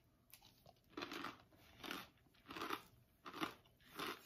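A mouthful of toasted corn kernels (corn nuts) being chewed, with about five crunches at an even pace, roughly one every two-thirds of a second, starting about a second in.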